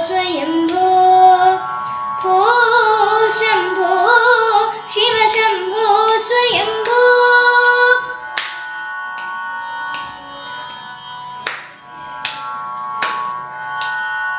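Boy's voice singing a Carnatic devotional song in Revathi raga, with sliding, ornamented notes over a steady drone. The vocal phrase ends about eight seconds in, and the drone continues with sharp percussive beats roughly every 0.8 seconds.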